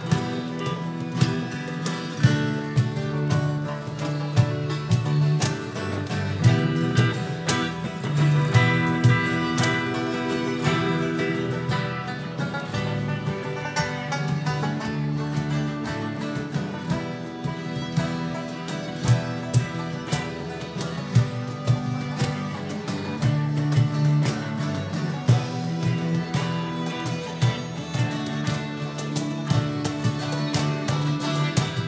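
A street band playing an upbeat country-folk tune live on acoustic and electric guitars with fiddle and harmonica, over a steady beat of percussion hits.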